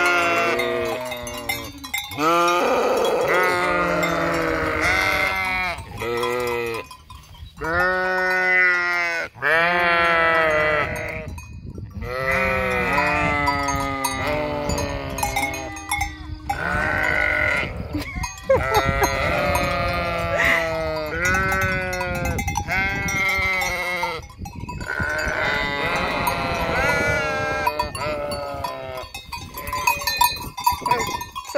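A flock of sheep bleating almost continuously, many loud calls overlapping one another with only brief gaps between them.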